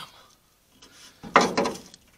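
Rusty exhaust pipe, bent in half in a wreck, grabbed and pulled by hand, scraping and rattling against the truck's underside. The loudest burst comes about a second and a half in and lasts about half a second.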